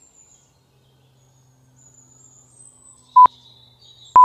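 Faint low hum and faint high chirps, then near the end one short, loud, single-pitch electronic beep from an interval timer, the kind that counts down the end of a timed stretch hold.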